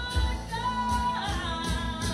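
Live contemporary worship band playing a song: a woman sings lead, holding one long note in the middle, over acoustic and electric guitars, bass, keyboard and drums with regular cymbal strokes.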